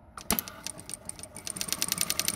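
Juki DDL-9000C single-needle lockstitch industrial sewing machine starting to sew. A knock as it starts, then a stitching tick that speeds up and settles into a steady rapid rhythm of about a dozen stitches a second.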